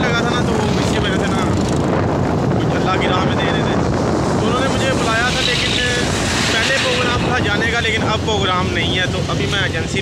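Loud, steady wind rushing over the microphone while moving along a road. From about halfway through, a man's voice talks over it.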